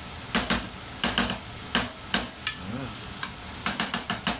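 A cooking utensil stirring chopped pork in a frying pan, knocking and scraping against the pan about a dozen times at an irregular pace over a low sizzle of the meat frying.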